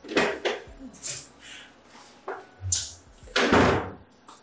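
An interior door being opened and shut, in a run of short handling noises. There is a dull low thump a little before three seconds, and the loudest noise comes near the end.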